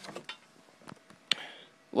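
A few light clicks and knocks from handling a cardboard keyboard box as it is moved and set down against the keyboard. The loudest click comes about a second in.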